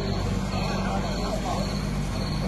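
Steady low drone of a heavy vehicle's engine running, with people's voices faintly in the background.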